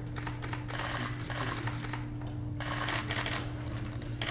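Camera shutters firing in rapid bursts, a clatter of clicks in runs of about a second with short pauses between, over a steady low room hum.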